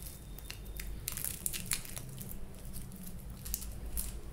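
Crackling, crinkly rustle of fingers handling hair, a run of short sharp crackles, thickest in the middle.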